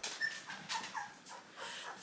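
Newborn Golden Retriever puppy, about two weeks old with eyes barely open, whimpering in a string of short, high squeaks that drop in pitch.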